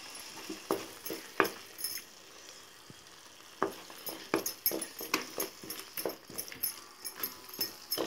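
A wooden spatula stirring thick tomato masala in a pan, knocking and scraping irregularly against the pan, with a quieter spell a couple of seconds in.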